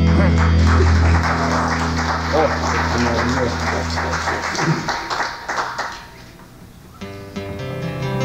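The last chord of a gospel song rings out with bass and guitar, then the congregation applauds for about five seconds, with a few voices calling out. The applause dies away, and about seven seconds in a guitar begins picking the opening notes of the next song.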